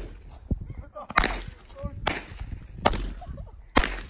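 Small fireworks going off in a series of sharp cracks, four of them at uneven gaps of about a second, with faint shouting in between.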